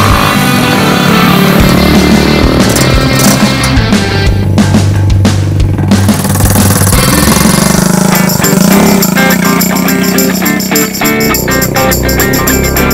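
Background rock music with guitar and a steady beat.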